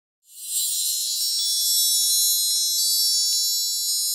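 Musical intro: a bright, high, shimmering chime swells in just after the start and rings on, slowly fading.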